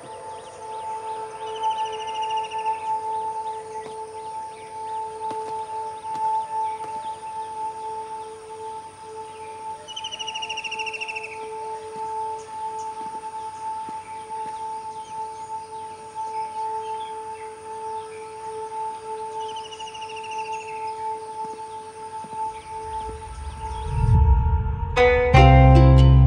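A steady, sustained drone of background music with an outdoor bird ambience: a short trilling bird call comes three times, about nine seconds apart, over a faint high steady whine.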